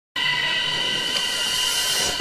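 A steady high-pitched whistling tone with several overtones over a hiss that swells toward the end, starting abruptly. It is the opening of the edit's soundtrack, just before the rap comes in.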